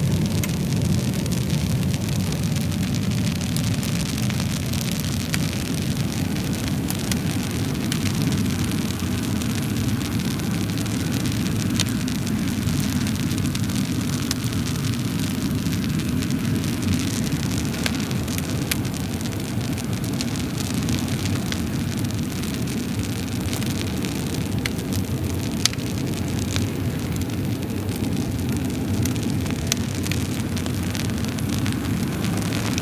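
Wood fire burning in a stove: a steady low rush with scattered small crackles and pops throughout, and one sharper pop late on.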